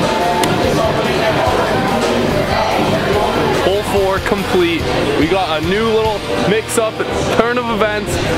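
Background music playing, with voices talking or singing over it in the second half.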